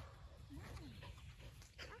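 A dog whining faintly, two short rising-and-falling whines about half a second in, otherwise near quiet.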